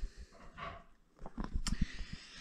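Faint handling noises from the bicycle's front fork and a strap hooked around it: a few soft knocks in the second half and one sharp click.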